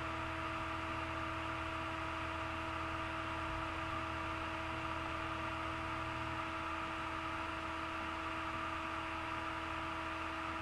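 Steady hiss with a few constant humming tones and a low rumble: background noise of a computer and its recording microphone, with no other events.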